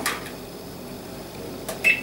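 Thermomix TM31 control panel giving one short electronic beep near the end, just after a small click as a key is pressed.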